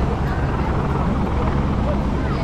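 Helicopter's low, steady rotor and engine drone overhead, likely a lifeguard rescue helicopter, with beach crowd voices over it.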